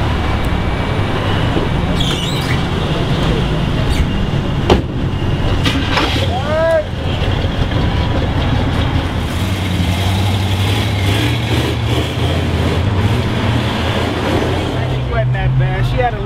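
Car engine running with a low, steady rumble amid street traffic noise. A single sharp knock about five seconds in, and a short pitched squeal soon after.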